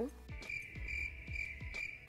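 Soft background music: a high, steady held tone over a run of low bass notes.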